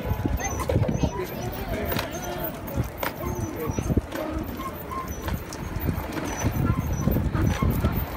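Irregular knocks and clatter of a toddler's tricycle rolling over a concrete sidewalk, mixed with footsteps and voices.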